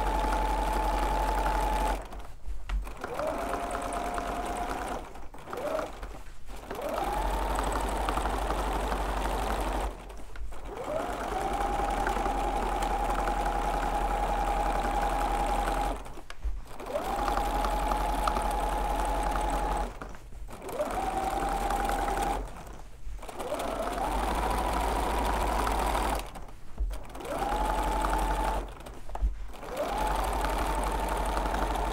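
Bernina domestic sewing machine free-motion quilting, running in stretches of a few seconds and stopping briefly about eight times. Each time it restarts, the motor whine rises in pitch and then holds steady.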